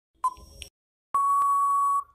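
Quiz countdown timer sound effect: a short beep just after the start, the last tick of the count, then about a second in a long steady beep signalling that time is up.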